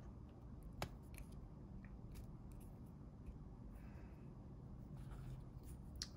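Hobby side cutters snipping moulding burrs off a Mini 4WD's rubber tyre: a few faint clicks, the sharpest about a second in.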